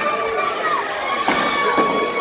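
Spectator crowd in a gym shouting and cheering, with children's voices calling out in long held shouts. Two sharp smacks ring out about two-thirds of the way through.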